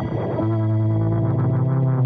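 Electronic music with long held synthesizer-like tones; in the first half second the held chord breaks into a brief distorted, noisy swirl, then a new low note comes in and is held.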